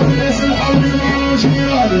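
Loud live Tunisian popular music through a PA: a male singer at the microphone over an amplified band, with a plucked-string melody and a steady low bass.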